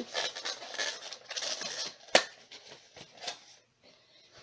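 Plastic egg carton being opened by hand: the plastic crinkles and rustles for about two seconds, then gives a sharp snap, followed by a few lighter clicks as the lid is lifted.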